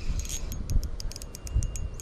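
Light, irregular metallic clicks and ticks from a small spinning reel and tackle being handled, over a low uneven rumble of wind on the microphone.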